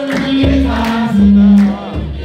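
Amplified Orthodox hymn (mezmur) singing: voices holding long notes over a steady low bass accompaniment, in a call-and-response style led by a soloist with a choir.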